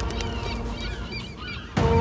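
A flock of birds calling in many short, quick cries over music that fades down. Near the end, loud music cuts in with a sustained note.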